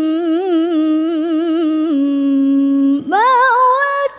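A woman reciting the Quran in the melodic tilawah style. She holds a long vowel with rapid ornamental turns, settles on a steady lower note about two seconds in, and after a short break leaps up to a higher held note near the end.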